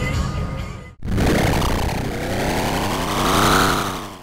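A logo sting sound effect: a loud swelling rush with a pitched sweep that rises for a couple of seconds and then falls away as it fades. Before it, about the first second, the in-car sound and background music fade out into a brief silence.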